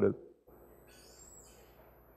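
The end of a man's spoken word, then near silence: faint room tone with a thin, steady high-pitched whine starting about half a second in.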